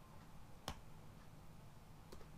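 A single sharp click of a computer keyboard key, about two-thirds of a second in, over faint room hum: a keystroke while typing code.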